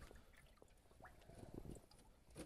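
Near silence, with a few faint scattered clicks and a faint soft rustle about one and a half seconds in.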